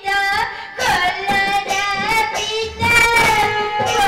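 A high-pitched voice singing long, held, wavering notes of a melody, with music behind it, in an Odia folk-theatre (pala) performance.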